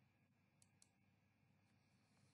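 Near silence, with two faint clicks close together a little under a second in.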